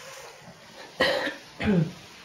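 A woman coughs once, about a second in, then gives a short throat-clearing sound that falls in pitch.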